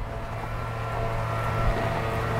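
A steady low engine drone with an even hum, slowly growing louder.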